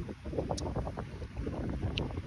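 Low, uneven buffeting rumble on the microphone, with irregular jolts.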